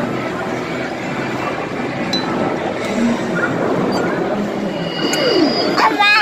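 Busy amusement arcade: a steady din of game machines' electronic sounds and background chatter, with short held electronic tones near the end.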